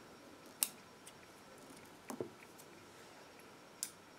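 Small bonsai scissors snipping off damaged leaves and shoots from a zelkova bonsai: a few short sharp snips, one about half a second in, two close together around two seconds, and one near the end.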